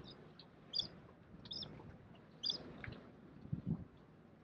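A small bird chirping: short, high chirps repeated about once a second. A soft low thump comes near the end.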